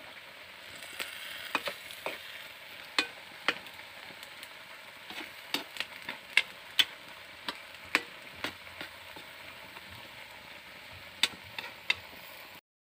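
Pan of food sizzling over a wood fire while bitter gourd shoots are stirred in, with many sharp clicks and taps of the utensil against the metal pan.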